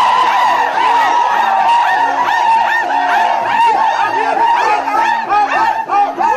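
A group of Asmat men singing and calling in quick, rhythmic bursts over a held note, with a steady low beat about twice a second from tifa hand drums.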